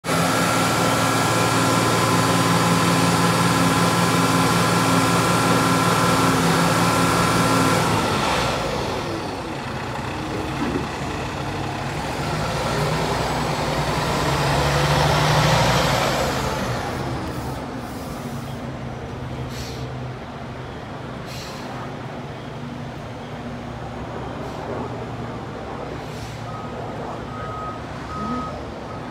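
A fire department tiller ladder truck's diesel engine running, at first a steady idle with a whine. The engine then swells in noise and falls away as the truck moves along the street, with a few short knocks. Reversing beeps start near the end.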